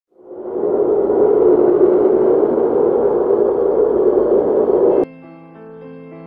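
A loud, steady rushing noise like wind fades in and runs for about five seconds, then cuts off abruptly. Quiet piano music with held notes begins in its place.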